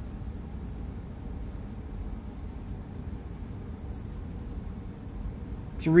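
Low, steady hum and hiss with no music playing, while the JVC RV-NB1 boombox's CD player reads a disc after being switched over from the radio.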